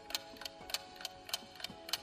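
Clock-ticking sound effect marking a quiz answer countdown: steady, evenly spaced ticks, over a soft sustained music bed.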